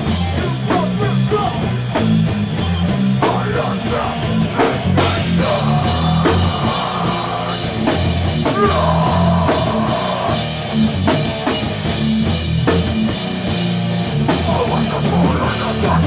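Heavy hardcore band playing live and loud: distorted electric guitar and bass over a pounding drum kit.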